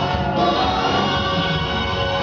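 Live band playing a song with vocals.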